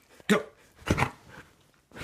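Husky barking: a few short, sharp barks with brief pauses between them.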